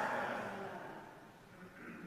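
The last of a man's voice trailing off in a large reverberant church, its echo dying away over about a second and leaving quiet room tone.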